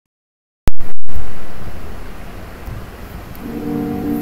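A sharp click, then a loud rumbling noise that fades over about two seconds. Near the end, the guitar notes of a backing beat come in.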